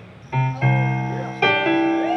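Keyboard chords struck three times, each ringing on, as the keyboardist tries out the opening of a slow blues song.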